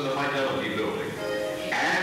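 Music with a solo voice singing held notes that change pitch from note to note.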